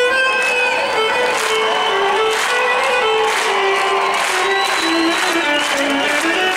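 Instrumental passage of Cretan folk music played live: a Cretan lyra melody over laouto strumming and percussion.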